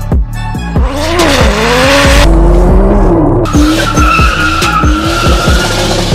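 A car drifting: engine revving up and down and tyres squealing, over music with a steady beat. The squeal settles into a steady high note through the second half.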